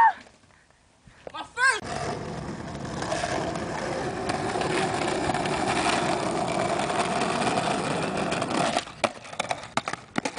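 Skateboard wheels rolling over asphalt: a steady rumble for about seven seconds, then a few sharp clacks of the board near the end.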